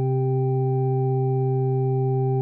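Organ-like keyboard holding one steady, unchanging chord on C: the reciting chord of the psalm tone that accompanies the responsorial psalm verses, played with no voice over it.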